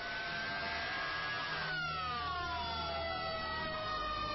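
Sirens wailing, several overlapping tones gliding slowly in pitch: one rises gently, then falls from about a second and a half in, over a steady rumbling hiss.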